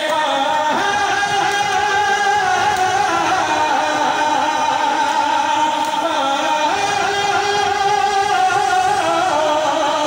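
Male voice singing an Urdu qasida in praise of Imam Ali through loudspeakers, holding long, slowly wavering notes.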